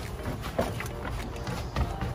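Wind rumbling on a camera microphone outdoors, a steady low rumble with a few faint ticks, under faint background music.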